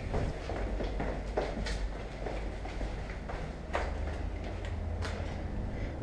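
Hurried footsteps going down a stairwell, a few sharp knocks among them, over a steady low rumble.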